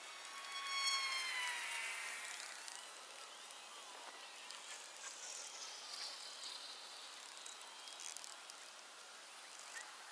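Quiet forest ambience: about a second in, one long call or creak slides down in pitch over a couple of seconds, followed by fainter high sounds drifting downward and a few light ticks.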